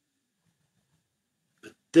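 Near silence for most of the pause, then a man's voice near the end as he says "But" and starts his next sentence.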